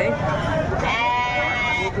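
A goat bleating once, a single drawn-out call of about a second starting about a second in, over crowd chatter.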